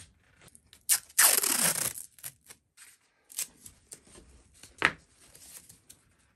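Adhesive backing liner being peeled from under a new pickguard on an acoustic guitar top: one loud peel of nearly a second, falling in pitch, shortly after a sharp click, then a few soft crackles and a sharp tick near the end.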